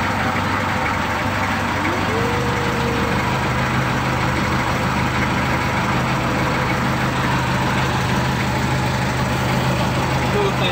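Engine of a motorized outrigger passenger boat running steadily; about two seconds in its low hum steps up in pitch as the engine speeds up.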